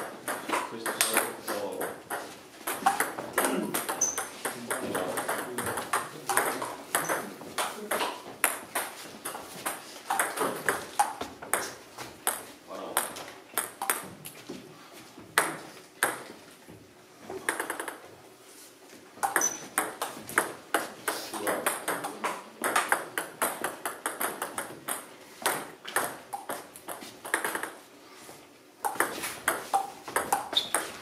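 Table tennis ball clicking off bats and the table in rallies: a quick, irregular run of sharp ticks, broken by short pauses between points.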